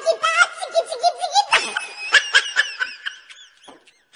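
A baby laughing hard in a run of short, high-pitched bursts that trail off near the end.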